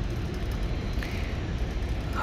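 Steady low background rumble, even in level, like running machinery or ventilation.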